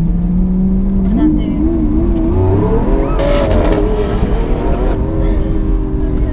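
Lamborghini Aventador SV's 6.5-litre V12 accelerating hard, heard from inside the cabin. The engine note jumps up about a second in and climbs for a couple of seconds, then drops back as it shifts up a little past halfway and holds at a steady higher pitch.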